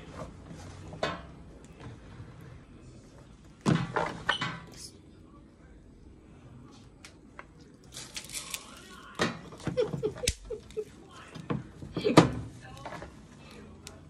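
Intermittent handling sounds from a disposable aluminium foil roasting tray loaded with vegetables: short crinkles, rustles and knocks, in a spell about four seconds in and a busier run in the second half.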